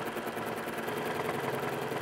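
Sewing machine running steadily at speed, its needle stitching fast and evenly through the quilt during free-motion quilting.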